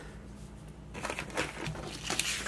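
Handling of a printed paper sheet, rustling and crinkling irregularly from about a second in.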